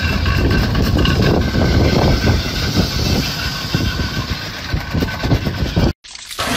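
Vehicle running on a road, a loud steady rumble with irregular knocks through it, as a minivan is towed on a strap.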